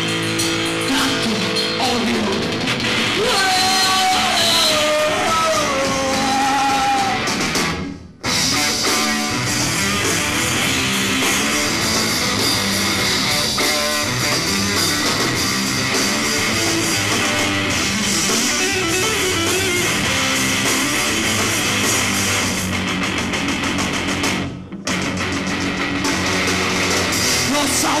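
Live rock band playing an instrumental passage on electric guitars, bass and drums, with a melodic line bending up and down in pitch in the first few seconds. The whole band stops dead for a moment twice, about eight seconds in and again near the end, and comes straight back in.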